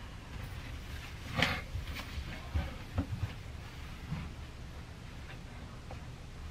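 Quiet small room with a low steady hum and a few soft rustles and clicks as a person sits down at a computer desk.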